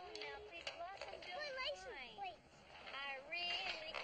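Lively voices with quickly swooping pitch, with no clear words.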